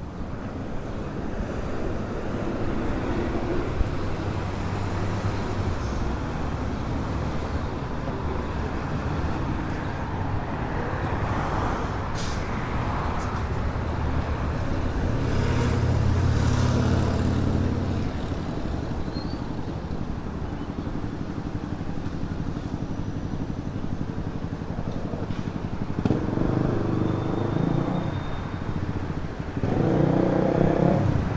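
Road traffic: cars passing steadily, with louder vehicle passes around the middle and twice near the end.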